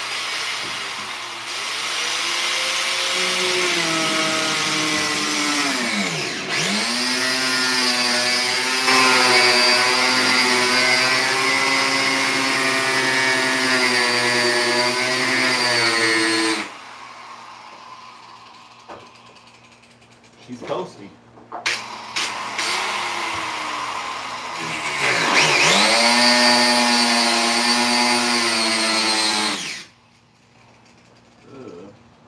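Angle grinder cutting into a car's plastic rear bumper cover: a high motor whine that dips in pitch as the disc bogs down under load and then recovers. It runs for about sixteen seconds and stops suddenly, a few clicks follow in a quieter stretch, and it starts up again for the last five seconds.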